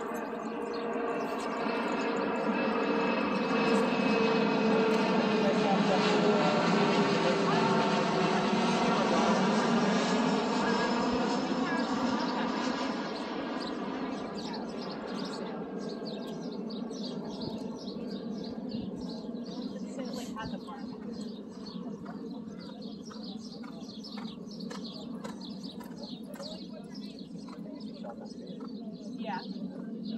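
Jet aircraft passing overhead: a loud engine drone with a whine that slowly falls in pitch, swelling over the first few seconds and fading away by about halfway through.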